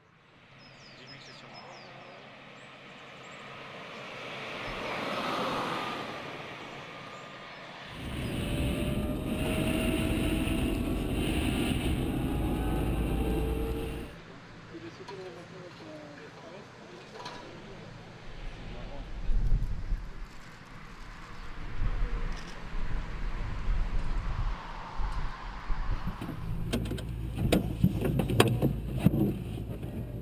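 Electric cars driving on a race track. A car rises and falls as it passes over the first few seconds, with a faint gliding whine. Then comes a loud steady rush of tyre and wind noise for about six seconds, then quieter driving noise with knocks and clicks near the end.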